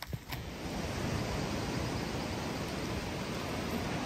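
Steady rushing noise of surf and wind along a rocky shore. It comes in shortly after the start and grows slightly louder.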